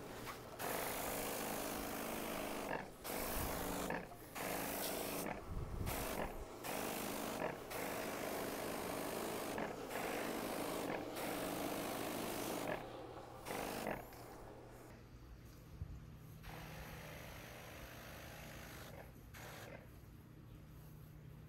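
Hiss of herbicide spraying from a backpack sprayer's wand nozzle, coming in bursts broken by short pauses as the trigger is let go and squeezed again. It stops about fourteen seconds in, leaving faint ambience with a low steady hum.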